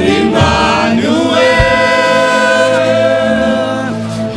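Gospel worship song sung into a microphone by a man, with several voices and a steady instrumental backing. One long held note runs from about a second in until near the end.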